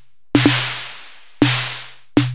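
Analog-modelled synth snare drum from Reason's Kong Drum Designer hit twice, about a second apart: each hit is a click with a short low-pitched body and a long hiss of noise dying away. The noise tail is shortening as the Noise Decay setting is turned down.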